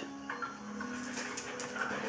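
An Australian Shepherd dog whining softly, with faint thin, wavering high tones that come and go: eager excitement.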